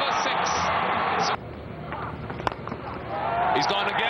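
Cricket stadium crowd cheering loudly; the cheer cuts off abruptly about a third of the way in, leaving a quieter crowd murmur. A single sharp crack of bat on ball comes just past the middle, and the cheering swells again near the end.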